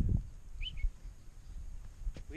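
A single short bird chirp about half a second in, over a low rumble of wind and movement on the microphone.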